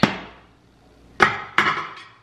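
Three sharp knocks of hard objects in a kitchen during tidying up: one right at the start, then two more close together about a second later, each dying away quickly.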